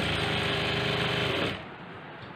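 Industrial sewing machine running steadily as it stitches a seam through cotton fabric, then stopping abruptly about one and a half seconds in.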